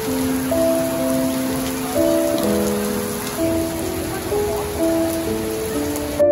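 Heavy downpour of rain hitting wet pavement, a dense steady hiss, with a soft music track of slow, held notes laid over it.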